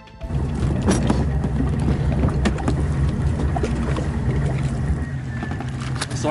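Outboard motor of a rigid inflatable boat running steadily as the boat comes alongside a concrete quay. A few short knocks sound over it.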